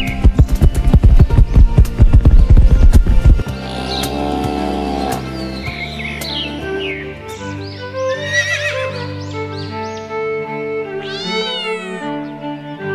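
Farm-animal sound effects over background music: a fast, loud clatter for the first three seconds or so, then a few separate animal calls, among them a horse whinny and a cat meow.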